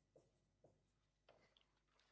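Near silence, with a few faint short ticks of a marker on a whiteboard as the last strokes of a line are written.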